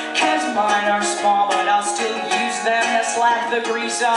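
A woman singing with a strummed ukulele, performed live through a PA in a small venue, the strums falling in a steady rhythm under the melody.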